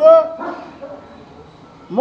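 A man's loud, emphatic speaking voice finishing a word at the start, then a pause of about a second and a half with only faint room tone, and his voice starting again near the end.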